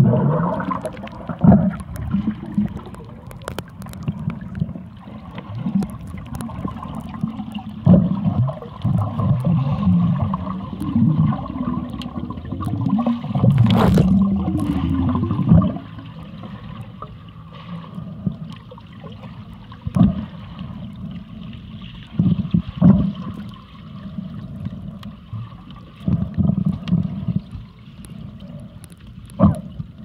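Muffled water sound heard from a camera underwater: irregular low surges of rushing, bubbling water as a snorkeler swims, with a few sharp clicks.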